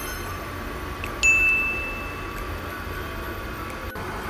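A single high, bell-like tone that starts suddenly about a second in and fades over about a second, over a steady low hum.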